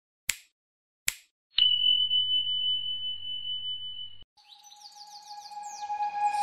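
Sound effects of an animated like-and-subscribe button: two sharp clicks, then a steady high beep held for about two and a half seconds that cuts off suddenly, then a run of quick falling chirps that grows louder near the end.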